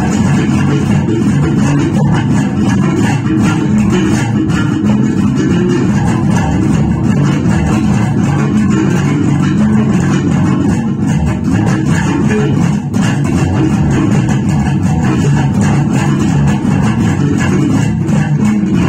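Electric bass guitar played fingerstyle in a continuous groove of plucked notes.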